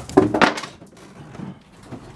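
A few dull thuds and a short strained grunt near the start, then quieter knocks and rustling: the handling noise of a very heavy potted cactus being carried down a carpeted staircase.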